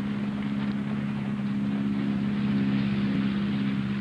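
Tow plane's piston engine and propeller running with a steady drone during an aerotow glider launch.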